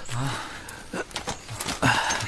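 A man's short, tired grunt or breath, then scattered footsteps and rustling on the forest floor as men walk past. A voice starts just before the end.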